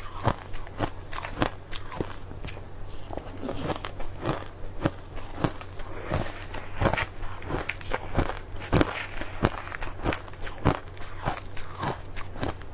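Crushed ice being bitten and chewed close to the microphone: a dense run of sharp, irregular crunches and crackles, with a low steady hum underneath.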